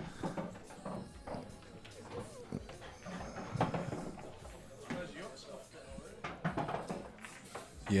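Low murmur of background chatter in a bar, with a pool shot played partway through: the faint knock of the cue on the cue ball and clicks of balls striking.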